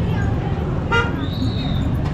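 Street traffic rumbling steadily, with a vehicle horn giving a short toot about a second in, followed by a thin high beep held for about half a second.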